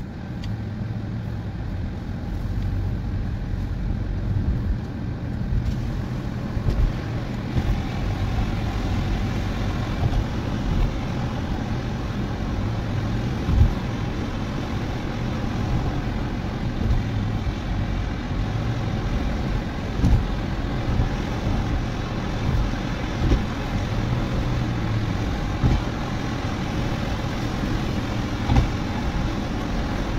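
Steady engine and tyre noise heard inside a car's cabin as it drives, picking up over the first few seconds as the car gets moving, with a low hum throughout. Several short thumps come through at intervals, the loudest about halfway through.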